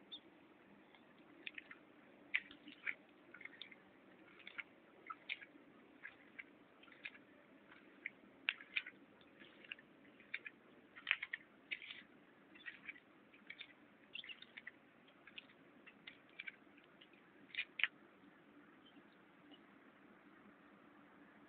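Terns calling: short, sharp, high-pitched calls repeated irregularly throughout, over a faint steady low hum.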